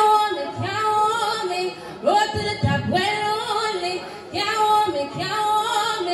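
A woman singing live into a microphone through a PA system, in three long phrases of held, wavering notes, one starting about every two seconds.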